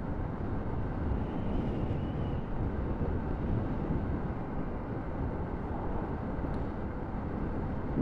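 Steady wind rush and road noise of a 125 cc bike being ridden along at town speed, mostly a low rumble with no clear engine note, picked up by a camera mounted on the rider.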